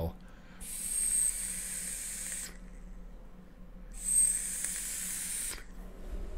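Vapor Giant Mini mechanical mod and rebuildable atomizer being vaped: two hissing pulls of about two seconds each, the second starting about four seconds in, each with a thin high whistle.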